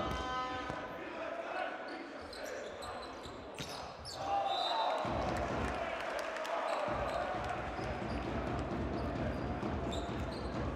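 Volleyball rally in an indoor sports hall: sharp smacks of the ball being served and struck, clustered around four seconds in. After that the hall grows louder with crowd noise and voices as the point is won.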